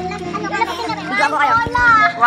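Children's voices talking and calling out over background music.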